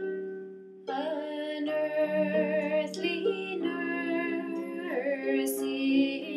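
Harp plucked in a slow accompaniment, joined about a second in by a woman singing a slow folk ballad over it.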